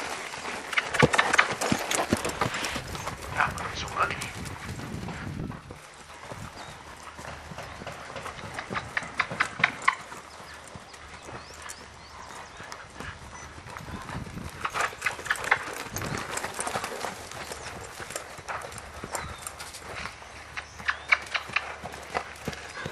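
Hoofbeats of a Percheron–Appaloosa cross horse moving under a rider on sand footing, coming in clusters of soft knocks.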